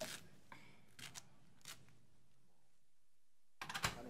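Scattered sharp clicks and knocks over a low room hiss, with a tight cluster of louder ones near the end.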